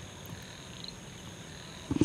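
A pause with faint steady background noise and a brief, faint high chirp about a second in.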